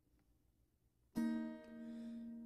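Near silence, then about a second in a single strummed acoustic guitar chord that rings on and slowly fades: the start of a background music track.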